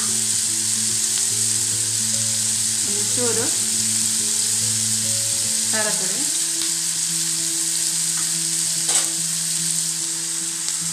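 Onion, tomato and green capsicum sizzling in oil in a non-stick kadai, stirred now and then with a spatula, as a steady hiss. A single sharp knock comes near the end.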